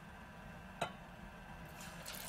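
A single sharp click a little before the middle, then batter-coated king crab begins sizzling as it goes into hot grapeseed oil, the hiss rising near the end.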